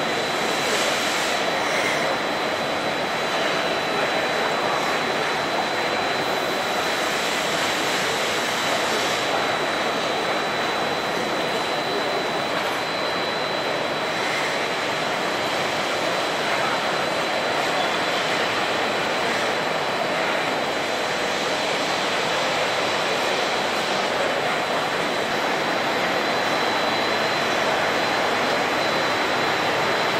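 Steady din of a busy exhibition hall, a constant even rush of machinery and air noise with a thin high whine throughout.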